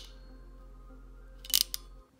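Ratcheting JST terminal crimping tool closing on a terminal and wire: a quick cluster of sharp clicks about a second and a half in as it completes the crimp.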